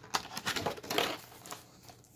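Thin plastic packaging crinkling and rustling as it is handled and turned over, busiest in the first second, then softer.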